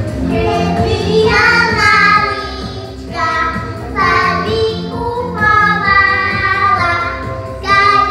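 Young children singing a song together into stage microphones, over accompanying music with a steady beat.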